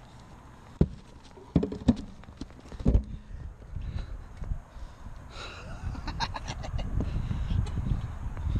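Handling noise of a quadcopter's onboard camera carried by hand down a ladder: a few sharp knocks in the first three seconds, then rustling and rubbing from about five seconds in, with a low rumble building toward the end.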